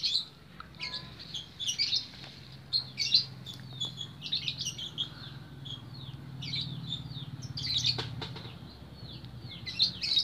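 Small birds chirping over and over in short, high calls, with a low engine hum that swells in the middle and fades again.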